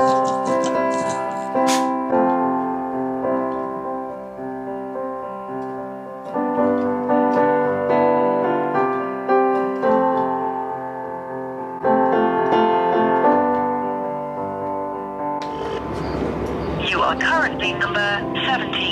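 A slow solo piano tune, single notes and held chords picked out on a keyboard, each note ringing and fading. About three-quarters of the way through, the piano gives way to a busy mix of voices over a low rumble.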